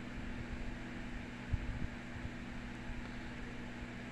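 Steady low hum with an even hiss of room background noise, and a couple of faint low bumps about halfway through.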